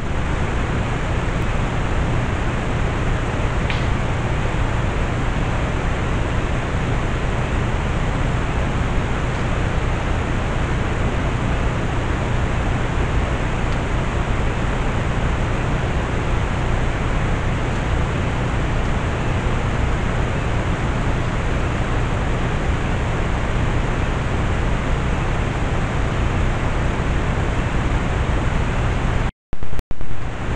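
Steady, even hiss with a low hum beneath it: the self-noise of a trail camera's built-in microphone, with no distinct sounds standing out.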